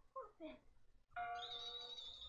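Faint dialogue from an anime episode's soundtrack. A little past halfway, a sustained bell-like tone comes in suddenly and holds.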